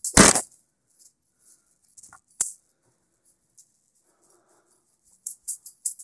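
Wire-wrapped juggling balls clacking and jingling. A single loud crash comes just after the start, then two light clacks about two seconds in and a quiet stretch, then a quick run of jingling catches in the last second as a new run begins.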